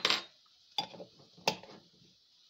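Three sharp clinks of a metal spoon and a glass olive jar being handled on a kitchen counter, each with a brief ring, spaced about three quarters of a second apart.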